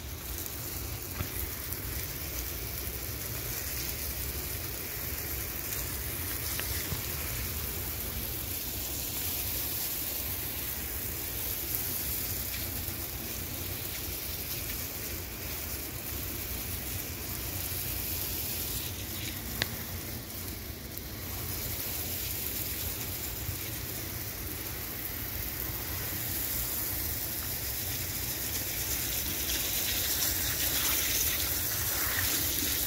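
Water spraying from an expandable garden hose onto floor tiles: a steady hiss like rain, with a single sharp click about twenty seconds in.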